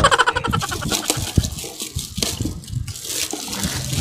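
Plastic gift wrapping and a cardboard box being handled, with irregular crinkling and rustling.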